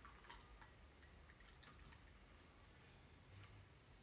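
Faint trickle and drips of a shaken cocktail being double-strained from a metal shaker through a fine mesh strainer into a glass, with a few small drip sounds.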